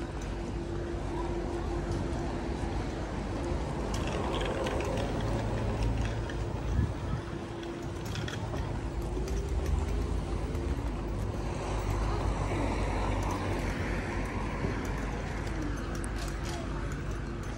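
Town street ambience heard while walking: a continuous rumble of road traffic with cars passing, over a steady low hum.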